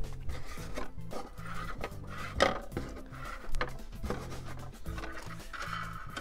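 Soft background music with light rubbing and tapping as plastic control-rod tubing is pulled through the balsa fuselage's formers; one sharper tap about two and a half seconds in.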